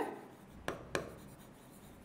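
A pen writing on a whiteboard surface, with two short taps of the tip about a quarter second apart, a little before the middle, over faint scratching.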